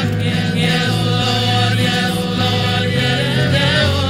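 Church congregation singing a praise song together with a band, over low bass notes that change about once a second.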